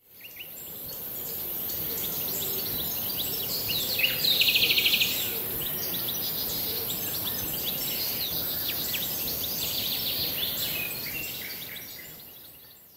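Birds chirping and singing over a steady high hiss, with a fast trill about four seconds in; the sound fades in at the start and fades out near the end.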